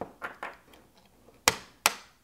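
Plastic MC4 spanner wrench turning the cable-gland nut of an MC4 solar connector, with a few faint ticks followed by two sharp plastic clicks about a second and a half in and near the end.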